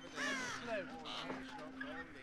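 Crows cawing several times, with the loudest, harshest caw just after the start and a few shorter caws following.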